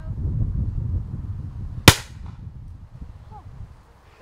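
A single shotgun shot from an over-and-under shotgun, about two seconds in, over a low rumble.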